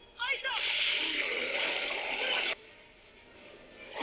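Soundtrack of an animated fight scene: a woman's short yell runs into a dense rushing sound effect with music underneath, which cuts off abruptly about two and a half seconds in.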